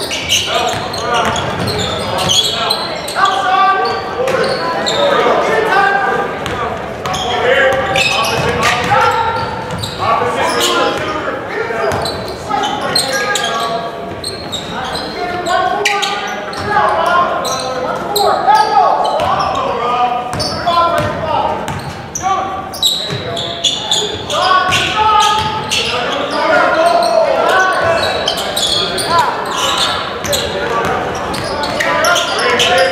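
Indoor basketball game sounds in a gymnasium: a basketball dribbling on the hardwood court in repeated short knocks, under continuous voices of players and spectators calling out, echoing through the hall.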